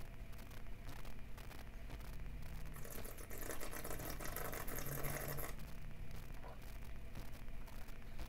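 A wine taster's slurp: wine held in the mouth while air is drawn in through pursed lips to aerate it, heard as a hiss starting about three seconds in and lasting about two and a half seconds.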